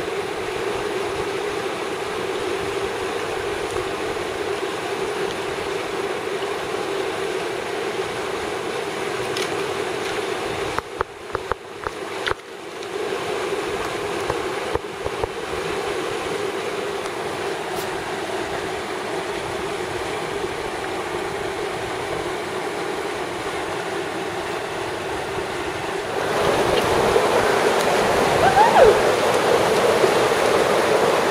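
Mountain river water rushing steadily, broken briefly by a few clicks about eleven seconds in, and louder near the end.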